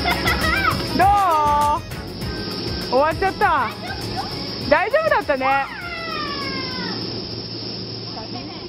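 A woman's excited shouts and whoops with big swoops in pitch. There is one about a second in and a shouted exchange ("How is it?" "Wonderful!") around three to five seconds, ending in a long falling call. Background music plays under the first couple of seconds, then drops away.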